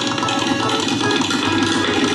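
Tabla solo: a fast, dense run of strokes on the tabla pair over the steady, repeating lehra melody of a harmonium.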